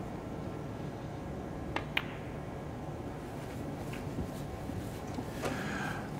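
Two sharp clicks of a snooker shot about a quarter second apart, a cue tip striking the cue ball and then the cue ball hitting another ball, over a quiet, steady arena hush.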